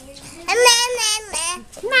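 Toddler babbling a string of sing-song "ma" syllables, starting about half a second in.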